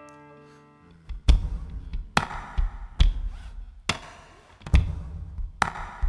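An acoustic guitar chord rings and fades, then from about a second in the guitar's body is slapped by hand in a steady beat: a deep thump just over once a second, with lighter taps between.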